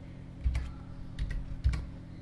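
Computer keyboard and mouse: a handful of separate clicks as a word is typed, with a couple of low thumps about half a second in and near the end.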